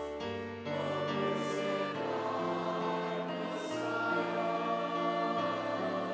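A church choir singing a slow hymn in long, held notes.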